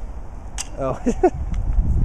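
A rock dropped into a tin can, one short clink about half a second in.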